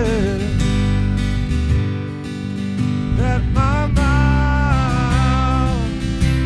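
Live worship music: acoustic guitars strumming chords under a man's singing voice. The voice drops out for a few seconds early on, leaving the guitars, then comes back with a long, slightly wavering line.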